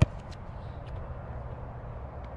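A football kicked once off the grass: a single sharp thud right at the start, followed by a low steady rumble.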